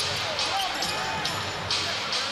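A basketball bouncing as it is dribbled on a hardwood court, a few sharp bounces over the steady noise of an arena crowd.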